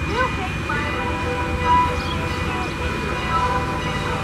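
Strasburg Rail Road steam locomotive No. 89, a 2-6-0, working close by during a track-switching move, giving a steady low rumble, with voices in the background.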